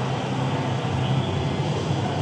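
Steady background din of a noisy exhibition hall: an even rushing noise over a low, constant hum.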